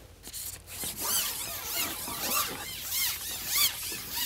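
Carbon fishing pole being shipped back over a pole roller, making a run of rubbing, squeaking strokes, about two or three a second, as the sections slide over the roller and through the hands.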